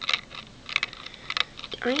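About four short clusters of light clicking, spread through two seconds, then a voice starts near the end.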